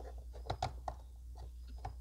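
A few faint plastic clicks and taps as a ribbon cartridge is pressed and worked onto the print-head carriage of an Epson LX-300-series dot-matrix printer, over a low steady hum.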